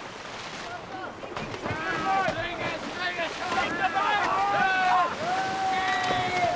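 A group of boys yelling and shouting while thrashing and splashing in water, the overlapping yells building up about a second and a half in, with one long held shout near the end.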